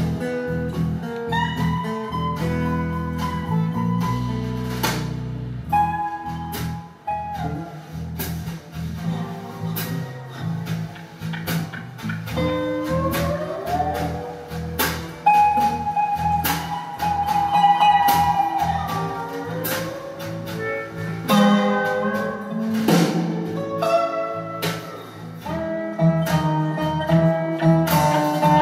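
Live acoustic blues band playing an instrumental passage: a resonator guitar, a fiddle and an acoustic guitar, with notes that glide up in pitch and some long held notes.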